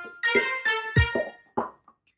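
A song played on air as a caller's intro: keyboard and electric-piano chords over a deep beat. The music drops out for a moment near the end, then starts again.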